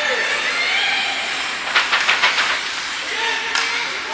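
An ice hockey game heard from the stands of an indoor rink: a steady hiss of rink noise with faint voices, and a quick run of sharp clacks about halfway through.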